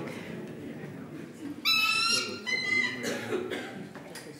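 A bird calling: a high, slightly rising call about one and a half seconds in, then a shorter high note about half a second later.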